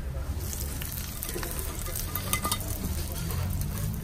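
Hot oil and fried almonds sizzling as they are tipped from a small frying pan onto yogurt-topped fatteh, with a few light clicks of nuts against the pan about halfway through, over a steady low hum.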